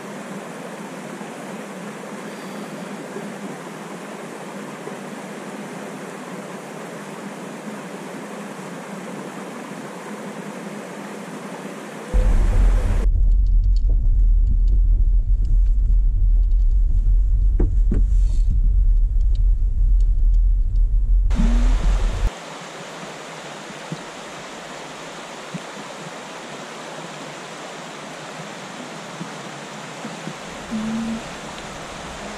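Steady rush of creek water, cut about twelve seconds in by a loud, low road rumble of a truck driving a dirt road, heard from inside the cab, which lasts about ten seconds before the water sound returns.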